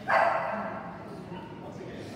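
A single loud dog bark right at the start, its echo in the hall dying away over about half a second.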